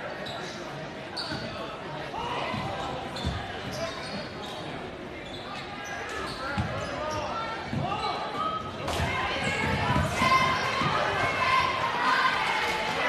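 A basketball bouncing on a hardwood gym court during play, with shouting and chatter from players and spectators echoing in the large hall; the voices grow louder in the last few seconds.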